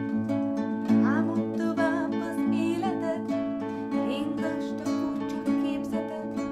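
Two acoustic guitars playing an instrumental passage of a song: sustained chords, with a higher melody line whose notes slide and bend in pitch from about a second in.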